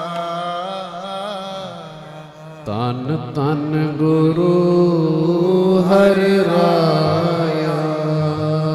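Sikh shabad kirtan: harmonium drone under male voices singing a Gurbani hymn. The sound dips briefly about two and a half seconds in, then the singing comes back louder.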